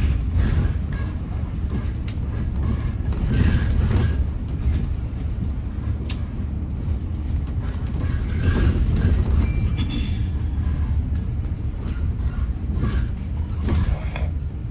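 Battery-electric Alexander Dennis Enviro400EV double-decker bus heard from inside while it is moving: a steady low rumble of the road and running gear, with short rattles and knocks from the body and windows.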